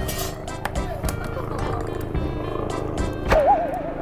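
A helicopter passing overhead, its rotor beating steadily, under background music. A short laugh comes near the end.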